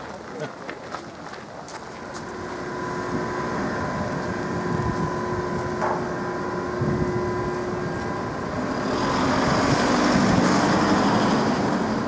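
Street traffic: a motor vehicle's steady hum builds up, then louder road noise swells from about nine seconds in.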